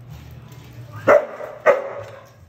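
A bull terrier barking twice, two short, loud barks about half a second apart in the second half.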